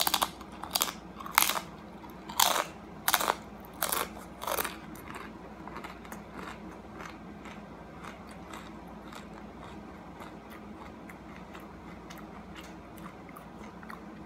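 A crunchy homemade chip being bitten and chewed: about seven loud, sharp crunches in the first five seconds, then softer chewing that fades out.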